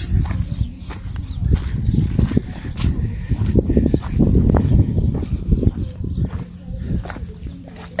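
Uneven low rumbling and scuffing of a hand-held phone microphone being carried over dirt ground, with footsteps.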